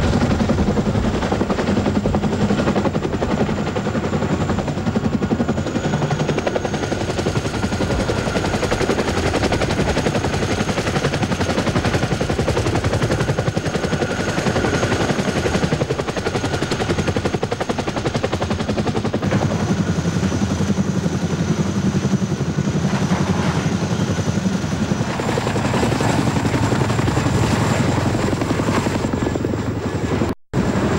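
Chinook tandem-rotor helicopter flying low and close, its rotors beating in a fast, steady chop, with a thin high whine over it.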